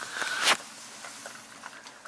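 A dog eating kibble and a burger patty from a plastic bowl: faint crunching and small clicks, after a single knock about half a second in.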